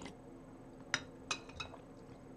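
A spoon clinking against a china plate while scooping porridge: a light tap at the start, then three sharp, ringing clinks close together in the second second.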